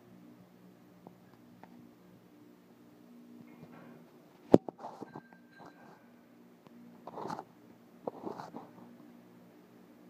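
A steady low hum, with a single sharp knock about four and a half seconds in as the loudest sound, a few faint clicks, and two short scuffs later on.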